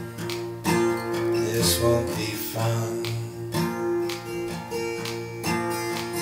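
Acoustic guitar strummed, each chord ringing on between strokes that come every second or two.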